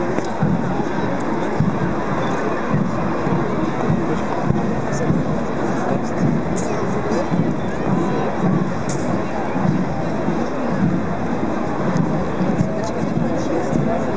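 Crowd of a large street procession: many voices talking at once in a steady babble, with music mixed in.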